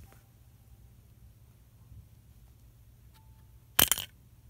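Wooden Victor snap mouse trap going off near the end: one sharp snap with a brief clatter, its bar stopped by a Nerf foam dart wedged in the trap.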